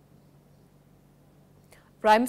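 Near silence: a faint steady low hum of room tone.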